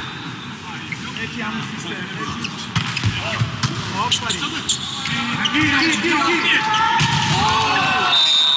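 Volleyball rally: a series of sharp smacks as hands strike the ball, starting about three seconds in, mixed with players' shouts.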